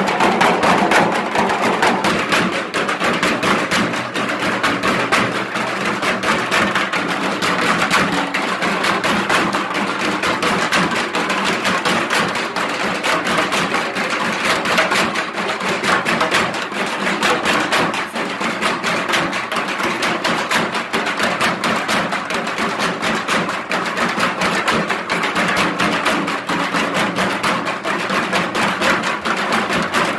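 Percussion music with fast, continuous drumming at a steady level throughout.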